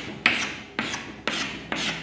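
Chalk being drawn across a chalkboard in short scraping strokes, about two a second, as curved brackets are chalked around the terms.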